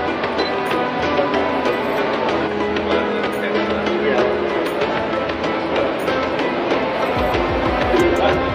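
Background music with a steady beat and held tones, with voices beneath it.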